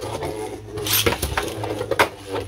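Two Beyblade Burst spinning tops, Cyclone Ragnaruk and Ultimate Valkyrie, whirring as they spin in a plastic stadium, with a few sharp clacks as they strike each other or the stadium wall.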